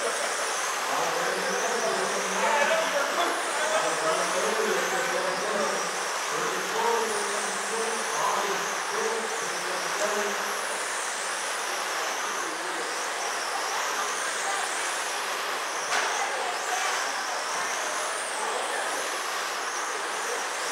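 Several 1/10-scale electric RC sprint cars racing on a dirt oval, their motors whining high and repeatedly rising and falling in pitch as they speed up down the straights and ease off into the turns.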